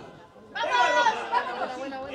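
Several people shouting and calling out at once, starting about half a second in after a brief lull.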